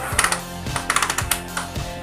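Quick irregular clicking from a Honda Tiger 2000 single-cylinder engine being kicked over with its cam chain slipped off the lower sprocket: the crank turns with no compression, the likely cause of the slipping kick starter. Background music plays underneath.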